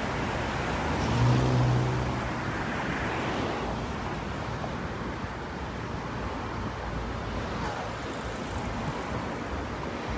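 Steady street traffic noise, a continuous wash of passing cars, with a louder low vehicle hum about a second in that fades after a second or so.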